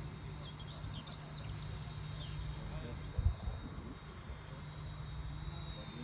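Electric ducted fan of a 12-blade RC jet whining as it flies by, a thin steady high tone that grows stronger near the end as the plane comes closer. Low wind rumble on the microphone runs underneath, with a thump about three seconds in.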